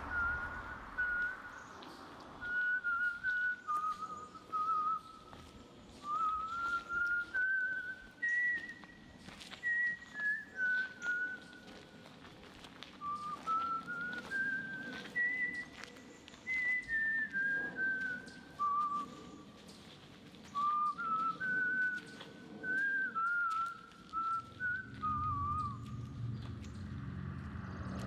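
A person whistling a slow tune, phrase after phrase with short pauses, the notes stepping up and down with a slight wobble.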